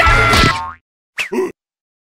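Cartoon soundtrack: the music fades out within the first moments, then after a short silence comes a brief springy cartoon boing that falls in pitch, about a second and a quarter in.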